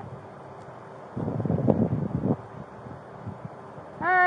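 A gust of wind buffeting a body-worn camera's microphone for about a second, between quieter stretches of outdoor background noise.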